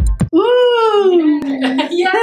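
A woman's drawn-out, playful vocal sound: one long note that slides down in pitch for about a second and a half, then wobbles briefly near the end.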